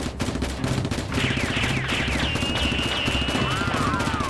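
Rapid automatic gunfire sound effects, a fast unbroken run of shots, over a low pulsing backing. From about a second in, a series of quick falling whistles joins, then a held high tone.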